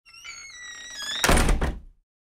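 Intro sound effect for an animated title card: bright, chime-like tones stepping down in pitch, then a loud hit with a low thump a little over a second in that dies away quickly.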